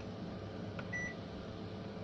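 Oven control panel giving one short, high electronic beep about a second in, just after a faint click of a button being pressed to set the temperature, over a steady low hum.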